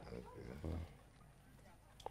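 Faint voices in about the first second, then near quiet.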